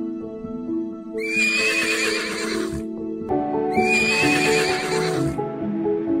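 A horse whinnying twice, each call a second and a half or more long with a quavering pitch, over soft background music.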